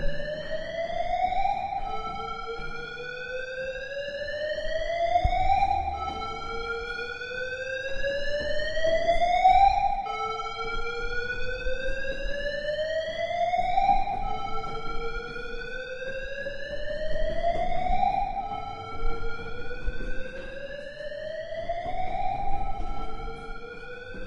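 Siren-like wailing tone that rises slowly in pitch over about four seconds, drops back abruptly and repeats about six times.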